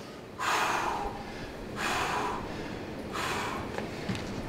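A person breathing hard after exercise, catching their breath with three heavy exhalations about a second and a half apart.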